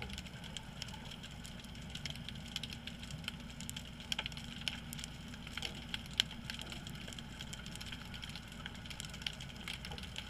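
Underwater ambience picked up by a submerged camera: a steady low rumble with many sharp, irregular crackling clicks scattered throughout.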